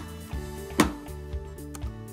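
Background guitar music with one sharp snap about 0.8 s in: the servo hatch on a foam model-plane fuselage pressed down until its latch clicks shut.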